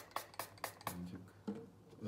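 A paper towel rustling and crinkling as it is folded in the hands: a quick run of short crisp rustles, about four a second, in the first second, then a faint murmured voice.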